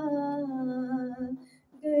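A woman singing an Urdu devotional verse into a handheld microphone. She holds one long note that sinks slightly in pitch, breaks off for a short breath, and starts the next line near the end.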